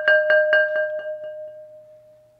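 Glazed ceramic flower pot played with a soft-headed mallet in a quick roll, about seven strokes a second, as a swell: the pot rings with a steady bell-like pitch, the strokes peak just after the start and then die away about a second in, leaving the ring to fade out.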